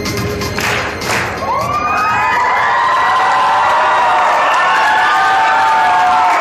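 Music with a steady beat stops about a second and a half in, and a crowd of school students breaks into cheering and high-pitched screaming, with some clapping.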